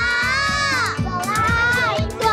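Children's high voices calling out together in two long, drawn-out calls, the first falling in pitch about a second in, over background music with a steady beat.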